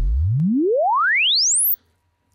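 Sine sweep test signal played through a loudspeaker: a single pure tone gliding steadily up from deep bass to very high treble at an even level, cutting off suddenly near the end. It is the measurement sweep picked up by a mic to measure the system's latency and the speaker-to-mic delay.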